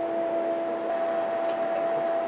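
Steady background hum and hiss with two faint steady tones, one of which stops about a second in; a faint click about one and a half seconds in.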